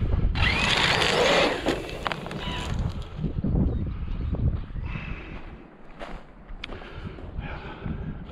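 Traxxas Sledge RC monster truck's brushless motor whining up as the tyres spray loose gravel, a loud burst lasting about a second near the start, then quieter low rumble.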